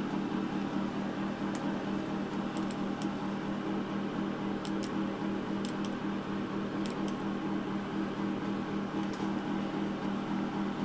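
Fan motor of a 1950s Toastmaster electric space heater running with a steady hum, with a few faint clicks scattered through; the fan is dry and in need of oil, by the owner's account.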